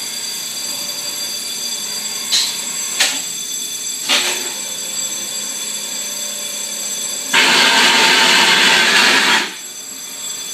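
Maac 4860 thermoforming machine running with a steady hum and fixed tones, and a few short sharp sounds. About seven seconds in, a loud rushing noise starts and lasts about two seconds, then stops.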